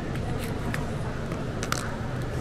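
A handful of small sharp clicks and taps as a phone is handled and pulled off a magnetic clip-on phone mount, over a steady low background hum.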